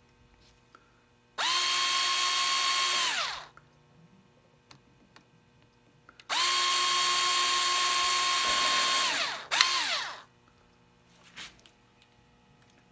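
Cordless drill with a fine bit spinning into a thin wooden strip on a wooden model hull. It runs in two steady whines of two to three seconds each, winding down in pitch at the end of each, then gives a short third burst.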